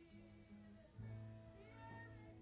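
Live worship band music with sustained keyboard chords and a steady low bass note that grows louder about halfway through, and a woman's singing voice coming in near the end, wavering in pitch.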